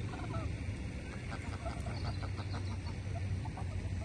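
Greylag geese calling: a quick run of short, repeated honks about a second in, with a few more near the end, over a steady low background rumble.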